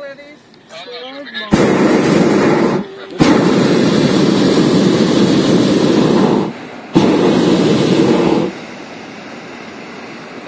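Hot-air balloon's propane burner firing overhead in three loud blasts, each starting and stopping abruptly, the middle one about three seconds long and the others shorter. A lower steady hiss stays on after the last blast.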